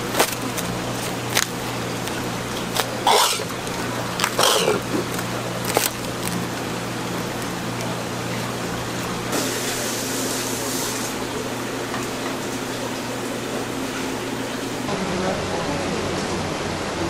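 Plastic cling film pulled from a wrap dispenser and stretched over a foam food tray, crinkling with several sharp snaps in the first few seconds, then a brief hiss, all over a steady low hum. Near the end the hum stops and busy market chatter takes over.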